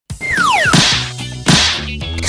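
Edited intro sound effects: falling whistle tones sliding down, then a swish ending in a hit, and a second swish-and-hit about a second and a half in, over music with low bass notes.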